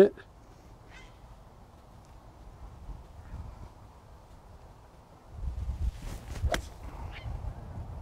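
A seven iron striking a golf ball off the fairway: one crisp, brief strike about six and a half seconds in, over a low outdoor rumble that rises just before it.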